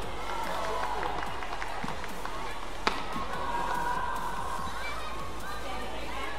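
Court sound of a badminton doubles rally: one sharp racket strike on the shuttlecock about three seconds in, over a steady murmur from the arena.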